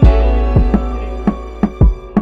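Background music with a steady beat: sustained synth or guitar chords over a heavy bass and drum hits.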